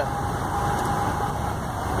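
Steady engine and road noise inside a moving truck's cab, with a faint steady whine through most of it.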